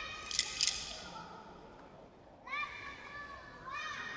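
Children's voices giving two short, high-pitched shouted calls in the second half, with a quick cluster of sharp clicks under a second in.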